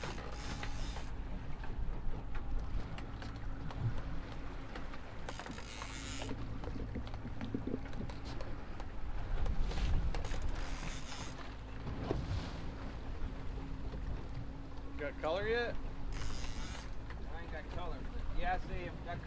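Outboard motors running slowly at trolling speed, a steady low hum, with a rushing hiss that comes and goes about every five seconds. A voice is heard briefly near the end.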